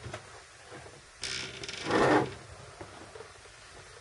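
A rubbing scrape lasting about a second, starting about a second in and getting louder towards its end: the plastic-cased soldering station being slid and lifted on the worktop.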